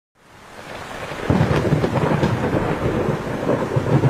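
Thunderstorm sound effect: heavy rain with a low rolling rumble of thunder, fading in over about the first second and then holding loud.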